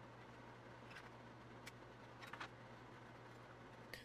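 Near silence: faint room tone with a steady low hum and a few faint clicks, about a second in and again a little past the middle.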